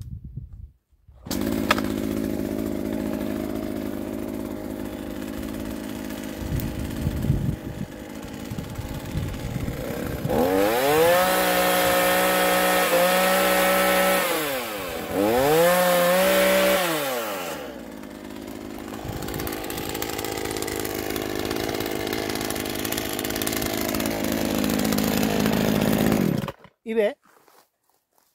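Chainsaw engine starting about a second in and idling, then revved up twice as it cuts through a vertical olive branch overhead, the pitch rising and falling with each rev. It drops back to idle and stops shortly before the end.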